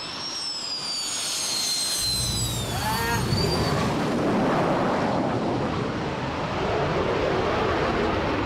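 A TA-4 Skyhawk jet flying past: a high turbine whine drops sharply in pitch about three seconds in as the plane goes by. A broad, steady engine noise swells up in its wake.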